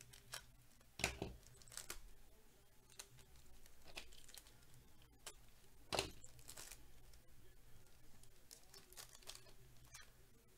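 Foil wrapper of a Bowman Chrome football card pack torn open and crinkled by hand, faintly: sharp tearing crackles about a second in and again around six seconds in, with lighter rustles between.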